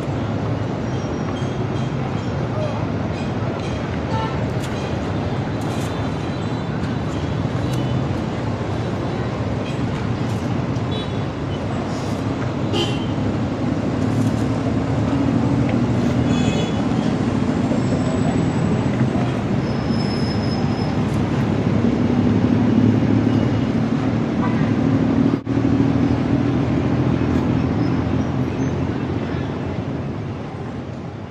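Busy city traffic ambience: a steady wash of engines and road noise, with a lower engine drone swelling twice as vehicles pass. There are a few short horn toots and faint background voices.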